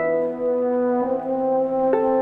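French horn playing slow, held notes, moving to a new note about a second in and again near the end, with harp accompaniment.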